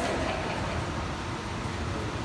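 Steady low rumble of background noise with no clear events.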